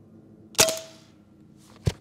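AEA Terminator 9mm semi-automatic pre-charged air rifle firing a single 64-grain hollow-point slug: one sharp crack about half a second in with a brief ringing tail. A second, shorter click follows near the end.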